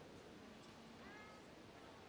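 Near silence: quiet arena room tone, with a faint high call rising and falling about half a second in.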